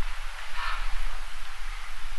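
Steady hiss with a low electrical hum from the sound system and recording chain, and one brief soft noise about half a second in.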